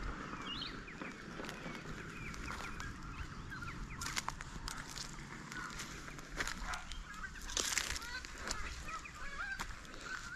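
Birds chirping and calling continually in the background, with a few sharp crunches of footsteps on dry, stony gravel ground.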